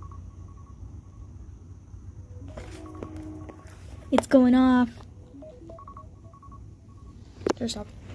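A smartphone timer alarm going off through the phone's speaker: a repeating run of short electronic beeps at two pitches, the signal that the set time has run out. A voice breaks in loudly about halfway through and briefly again near the end.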